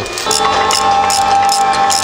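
Power wrench running steadily for about two seconds as the bolts of a disc-brake caliper bracket are tightened: a constant motor whine with rapid ticking. It starts a moment in and stops right at the end.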